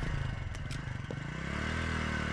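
Small commuter motorcycle engine running; its pitch rises about halfway through and then holds steady.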